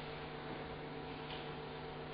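Steady low electrical mains hum with a faint hiss.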